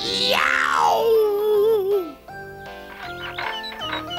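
A man's cry of pain after striking his thumb with a hammer: one loud yell that falls steeply in pitch, then wavers and dies away after about two seconds, over light background music.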